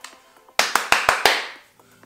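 A quick run of about five sharp claps starting about half a second in and dying away within a second.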